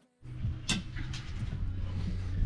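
A steady low outdoor rumble with a single sharp click a little over half a second in, after a moment of silence at the very start.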